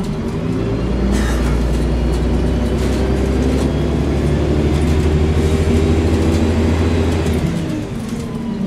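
Volvo Olympian double-decker bus's diesel engine heard from inside the passenger saloon, running under load with a deep, steady drone. The drone drops away about seven and a half seconds in, as the engine eases off.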